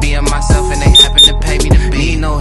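Hip hop music with a steady beat, and two short high beeps about a second in from an interval timer, signalling the end of the rest and the start of the next work interval.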